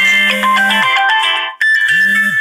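Smartphone ringtone playing loudly for an incoming call: a melody of short notes over a steady low tone, breaking off briefly about one and a half seconds in and then starting again.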